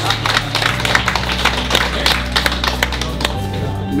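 A small group applauding with scattered hand claps over background music with held low notes.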